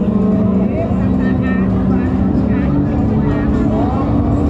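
Busy nightlife street ambience: loud music from the bars mixed with voices of passers-by and a steady low rumble.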